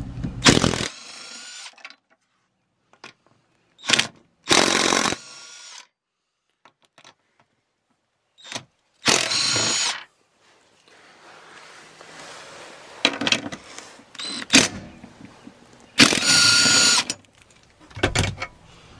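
Cordless impact wrench with an 18 mm socket run in four short bursts, each about a second long, loosening and backing out the bolts and nuts that hold a seat track to the floor. Fainter clicks and rattles of the tool and loosened hardware come between the bursts.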